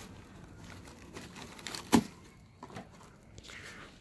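Hard plastic fairing pieces being handled and fitted against each other: faint rubbing and light ticks of plastic, with one sharp knock about halfway through.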